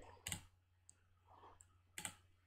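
A couple of faint computer mouse clicks amid near silence.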